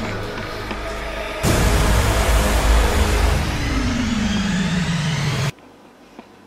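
Edited-in background music, joined about a second and a half in by a loud rushing sound effect with a slowly falling tone. Both cut off abruptly just before the end, leaving a quiet room.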